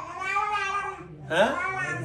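A woman's high-pitched, drawn-out voice in two long, wavering calls; the second, about a second in, glides upward as a stretched 'হ্যাঁ' (yes).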